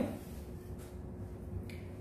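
Quiet room tone in a pause between sentences: a low steady hum with a faint steady tone, and two faint clicks about a second apart.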